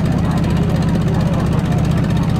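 Boat engine running steadily, a loud low drone with a fast, even beat, with faint voices over it.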